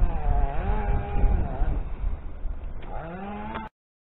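Wind buffeting the microphone in a heavy low rumble, with faint wavering hums over it; the sound cuts off abruptly near the end.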